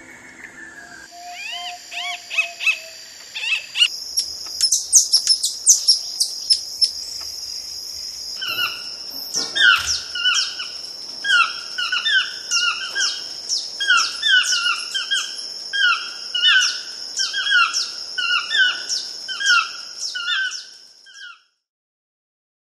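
Birds calling: a quick run of high chirps, then one bird repeating a short falling call over and over, about one and a half times a second, over a steady high-pitched drone. The sound fades out near the end.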